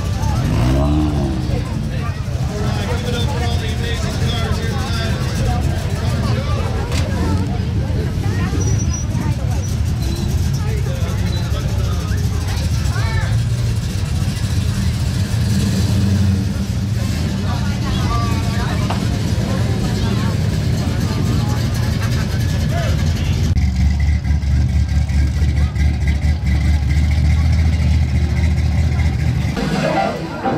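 Engines and exhausts of cars rolling slowly past one after another, a steady low rumble that grows deeper and louder in the last quarter, with crowd voices over it.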